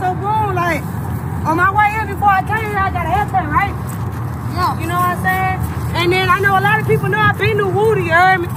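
Raised voices shouting and calling out excitedly with no clear words, some calls held long and high, over a steady low rumble.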